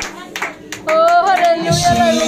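Congregation clapping in a steady rhythm during worship. About a second in, a voice comes in singing a long held note, and low band accompaniment joins near the end.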